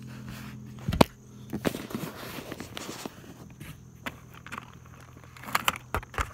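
Plastic CD cases and loose wires clattering and rustling as a hand rummages through clutter under a car seat. There is a sharp click about a second in and a few more clicks near the end.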